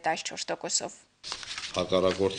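Speech: a voice talking, broken by a brief pause about a second in before the talking resumes.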